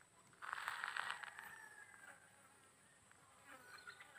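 A flying insect buzzing close past the microphone. It starts about half a second in, its pitch falls slightly, and it fades away over the next two seconds.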